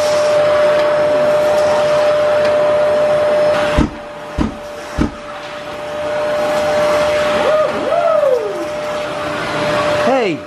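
Vacuum cleaner with a long hose and floor wand running on a rug, a steady whine over a rushing hiss. The sound breaks off about four seconds in, with three low thumps, and builds back up a couple of seconds later.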